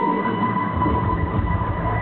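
Electric guitar holding one long, steady high note over a low rumble.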